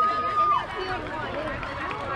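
A long, high, steady shout from one voice, cut off about half a second in, followed by the mixed chatter and calls of players and spectators at a softball game.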